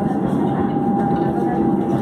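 Steady rolling noise of a suburban electric train heard from inside a moving carriage, with a thin steady whine coming in about half a second in.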